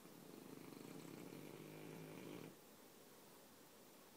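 A sleeping flat-faced dog snoring: one soft, long snore that cuts off abruptly about two and a half seconds in.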